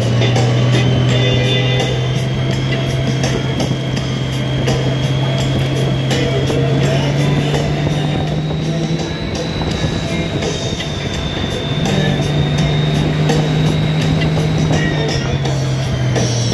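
Touring motorcycle engine running with wind rush while cornering, its pitch stepping up slightly about halfway and dropping near the end, under rock music with guitar.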